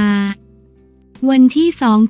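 Speech only: a woman's voice reading Thai news narration at an even, flat pitch, breaking off for about a second before resuming, with faint steady low background tones in the pause.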